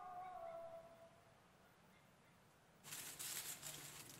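A held sung note fades out in the first second, followed by a quiet pause. About three seconds in, a sudden dry, crackly rustling begins, louder than the note.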